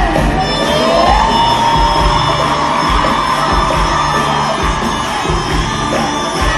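Live concert music from an orchestra, recorded loud from among a cheering audience in a large hall. About half a second in, a voice slides upward into a long held note.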